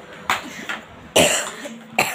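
A boy coughing: a couple of short coughs, then a louder one just over a second in.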